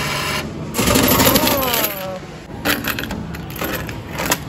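Arcade coin changer's note acceptor whirring as it draws in a banknote, then a short burst of falling tones about a second in, then irregular clicking and clattering of coins dropping into the tray.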